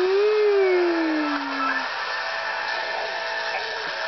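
Cartoon soundtrack heard off a TV: background music under a steady rushing action sound effect. Over the first two seconds a drawn-out hum, like a voice going "mm-hmm", rises a little and then slowly falls.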